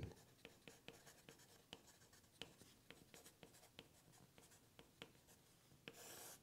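Faint scratching of a wooden pencil writing on paper, with short irregular ticks from the individual letter strokes.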